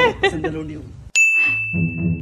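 A single bright ding sound effect: a sharp strike that rings on as one steady high tone. It sounds a little over a second in, after a short silence, and low plucked bass music comes in under it.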